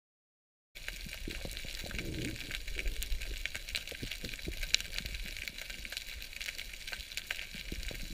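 Underwater ambience picked up by a submerged camera: a steady crackling hiss with scattered sharp clicks over a low rumble. It starts abruptly after a moment of silence, about a second in.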